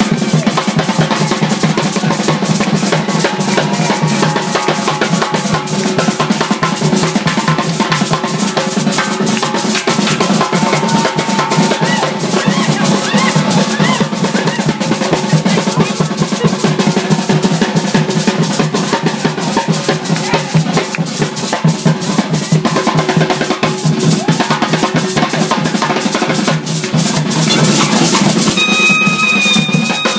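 Live folk drumming on hand drums and a stick-played drum, beating a fast, dense, steady rhythm with some pitched melody over it. Near the end the drumming gives way to different music with steady high held notes.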